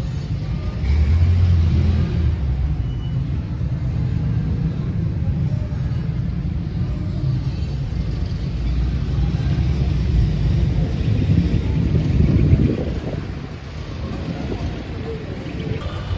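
City street traffic: a steady low rumble of vehicle engines and passing cars, swelling about a second in and again around twelve seconds.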